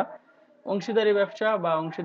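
Speech only: a lecturer talking, with a short pause about half a second long just after the start.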